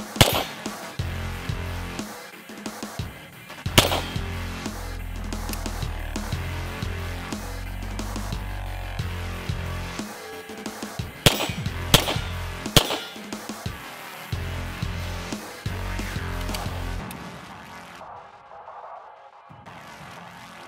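Background music with a steady low beat, cut through by five 9mm shots from a Beretta M9 pistol: one right at the start, one about four seconds in, and three in quick succession around twelve seconds in. The music drops away near the end.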